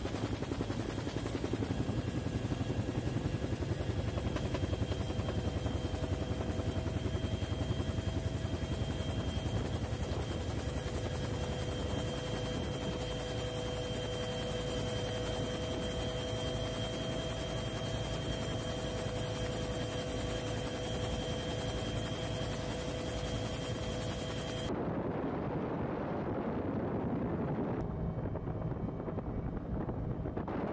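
Helicopter running steadily, heard from on board: a dense rotor and engine noise with a steady whine over a low rumble. About 25 seconds in, the sound changes abruptly to a duller noise like wind on the microphone.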